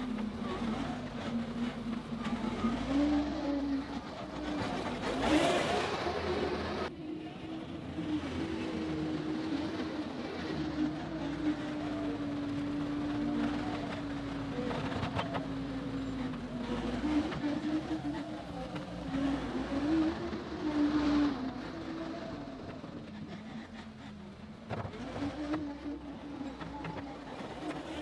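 John Deere 325G compact track loader's diesel engine running steadily under work, its pitch rising and falling as the machine grades dirt. There are louder bursts of noise about five seconds in and again about twenty-one seconds in.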